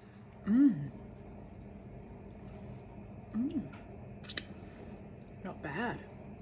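A woman's wordless 'mm' hums while tasting cake: three short rising-and-falling hums, the first about half a second in and the loudest. A few light clicks fall between them.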